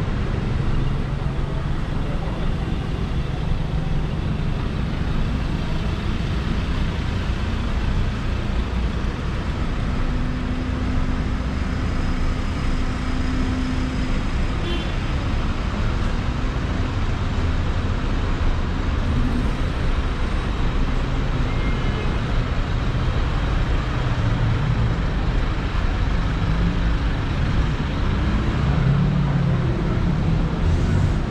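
City street traffic: cars running and passing along the road, a steady mix of engine hum and tyre noise.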